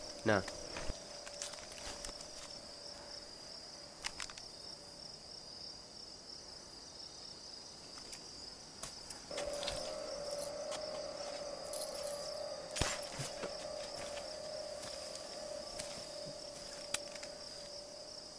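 Crickets chirping in a night scene of a horror film's soundtrack, a steady high trill with a few faint clicks. A steady low hum joins about halfway through.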